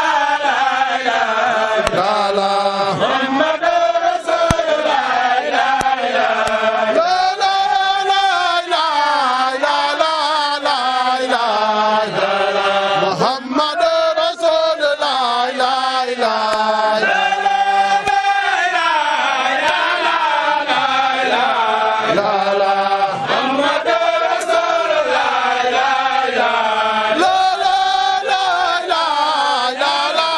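A group of men singing a Sufi devotional chant together in one melodic line that rises and falls without a break.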